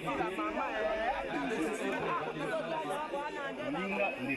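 Indistinct chatter of several people talking at once, with no single voice standing out.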